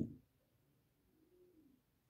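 Near-silent room tone with a faint, low cooing bird call that rises and falls, beginning just under a second in.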